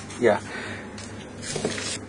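A soft hiss of water being sprayed onto damp beetle-rearing substrate, swelling near the end.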